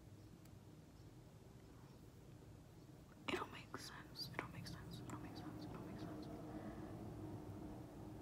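Near silence for about three seconds, then a woman's faint whispering and murmuring under her breath.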